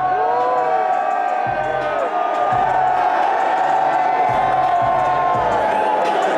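A hip-hop track played loud through a concert PA, with a held synth tone and booming bass that drops in and out, while the crowd yells and sings along.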